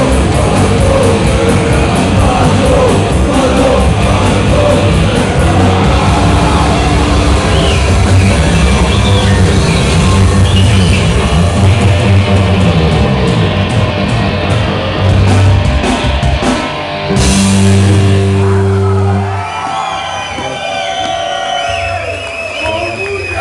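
Punk rock band playing live, with sung vocals over guitars and drums, ending on a held chord about seventeen seconds in. Then the crowd cheers and shouts.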